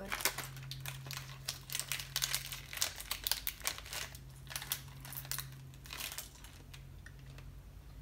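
Plastic candy pouch crinkling as it is handled, in dense bursts of crackles that thin out toward the end.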